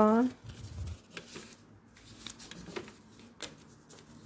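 Paper toy banknotes rustling and being shuffled by hand, with faint scattered light taps at a plastic toy cash register, after the tail of a spoken word at the very start.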